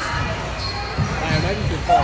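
Voices in a large echoing play hall, with low thumps of bouncing or landing about a second in and again shortly after. Near the end a woman's voice starts rising into a shout.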